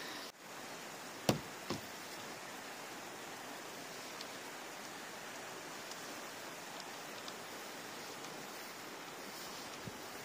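Snow being cleared off a van-roof solar panel: a steady even hiss, with two sharp knocks close together a little over a second in.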